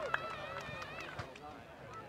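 Faint distant voices of people talking and calling out on an open field, with a few light clicks.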